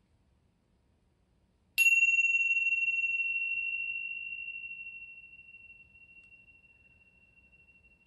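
A pair of tingsha cymbals struck together once, about two seconds in, ringing with one clear high tone that fades slowly over several seconds. The strike opens a meditation.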